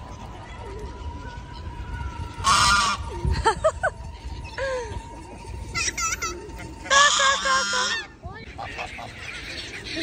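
Geese honking: two loud, harsh honks about two and a half and seven seconds in, with shorter calls between.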